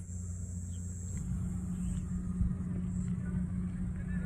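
Steady low engine hum, as of a motor vehicle running.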